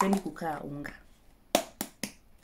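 A woman's voice briefly, then near the end two sharp clicks about a quarter of a second apart, the first the louder.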